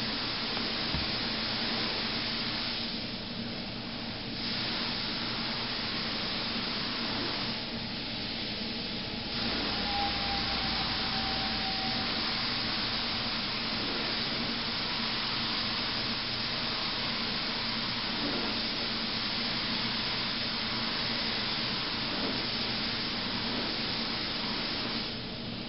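Gravity-feed automotive spray gun hissing steadily as paint is sprayed onto a car fender, easing off twice early on between passes when the trigger is let go.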